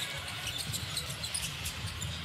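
Basketball dribbled on a hardwood court, with scattered short sharp clicks and a steady low background hum.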